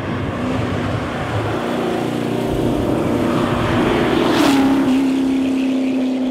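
Mid-engined 1965 Chevrolet Corvair Crown with a small-block Chevrolet V8 driving past. The engine note builds to its loudest about four and a half seconds in, then drops slightly in pitch as the car goes by and pulls away.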